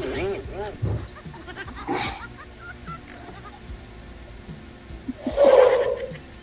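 A woman laughing: a quick run of rising-and-falling 'ha' pulses in the first second, a few more about two seconds in, and a louder burst of laughter near the end.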